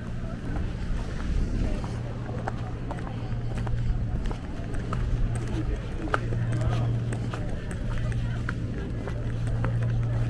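Seaside promenade ambience: indistinct voices of passers-by over a steady low hum, with scattered light taps.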